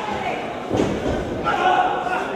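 A single heavy thud on a wrestling ring, with voices from the arena crowd.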